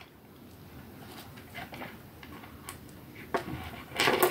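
Faint scattered clicks and light rustling of small beads and choker wire being handled, with a slightly louder click a little past three seconds in.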